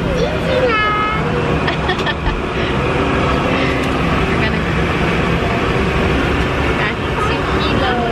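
Steady airliner cabin noise from the engines and airflow, with a child's high voice sliding up and down briefly about a second in and short wordless vocal sounds after.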